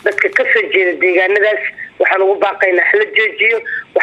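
Speech only: a woman talking in Somali, the sound thin and narrow like a phone or radio line.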